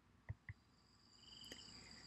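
Near silence: room tone with a few faint clicks and a faint high whine.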